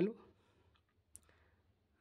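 Faint scratch of a pen on a notebook page, with one sharp click a little over a second in.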